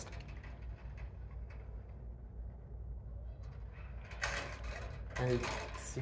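Hand wire strippers working on a light fixture's wires: faint clicks and scraping as the insulation is stripped, with a short louder scrape about four seconds in, over a low steady hum.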